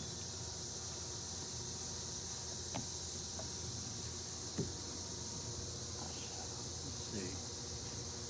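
Steady high-pitched drone of insects in the trees, over a low hum, with a couple of faint clicks as barnacles are picked off a piece of driftwood by hand.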